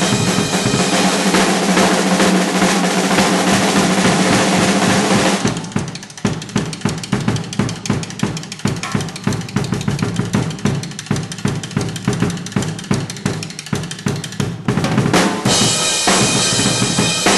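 Drum kit played live: a wash of cymbals for the first five seconds or so, then about nine seconds of rapid, even drum strokes, a short break, and the cymbals again near the end.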